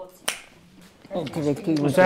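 A single sharp click, then a person talking from about a second in.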